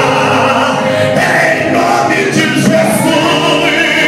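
A man singing a Portuguese gospel worship song into a handheld microphone, amplified through PA loudspeakers, holding long notes.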